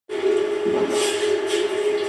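Audience noise in a live music venue, with a steady mid-pitched tone running underneath the whole time. The noise swells briefly about a second in and again half a second later.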